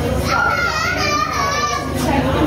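A high-pitched, wavering voice-like sound, heard from shortly after the start until near the end, over room chatter and a steady low hum.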